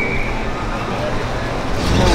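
City street ambience: steady traffic rumble from cars passing, with voices of people in the background.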